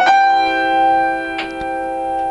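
Upright piano in a playful jazz improvisation: a chord struck at the start and held ringing, with a lighter note or chord added about a second and a half in.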